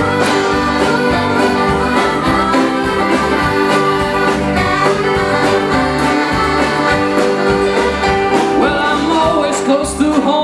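Live country-folk band playing an instrumental break at a steady beat: fiddle and accordion carrying the tune over strummed acoustic guitars, upright bass and drums.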